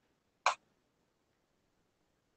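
A single short click about half a second in.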